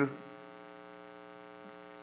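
Steady electrical mains hum with a buzzy stack of evenly spaced overtones, unchanging throughout; the tail of a man's spoken word is heard at the very start.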